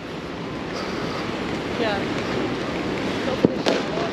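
Steady sea surf and wind noise on the microphone, with a single sharp distant bang near the end.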